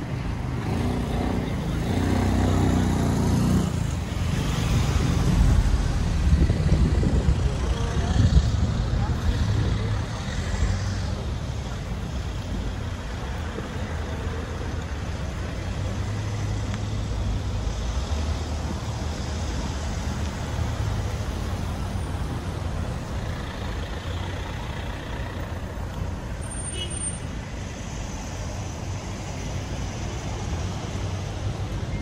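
Street traffic: cars passing at an intersection, louder over the first ten seconds, then easing to a steady low rumble of road noise.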